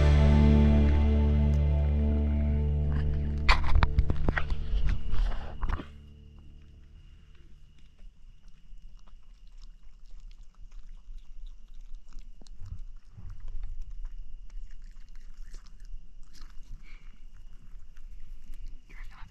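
Background music fading out over the first six seconds. Then a bettong chewing and foraging close to the microphone: faint, irregular crunchy clicks and rustles, with a steady thin high tone behind.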